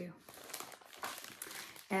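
Clear plastic sleeve of a cross-stitch kit crinkling as it is picked up and handled, an irregular rustle.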